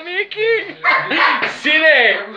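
Dog barking and yelping excitedly, a quick run of high calls that each rise and fall in pitch.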